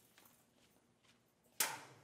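A counterweight brick being set onto the stack in a fly-system arbor: one sharp clunk about one and a half seconds in, after quiet handling.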